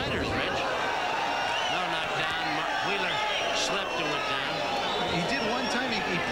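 A man commentating in continuous speech over steady background arena noise.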